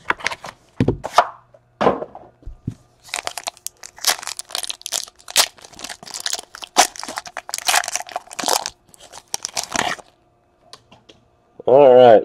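A foil trading-card pack wrapper is torn open and crinkled by hand. A few handling clicks come first, then a dense run of crackling tears from about three seconds in, stopping about two seconds before the end.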